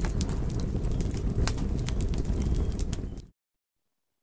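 Forest fire burning: a steady low roar with many sharp crackling pops, which cuts off suddenly about three seconds in.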